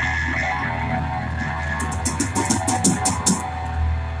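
Live rock band playing: electric guitars and bass held over the drum kit, with a quick run of drum hits about two seconds in.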